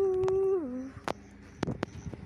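A pet dog's single long vocal note, held level for under a second and then sliding down in pitch, followed by a few light clicks.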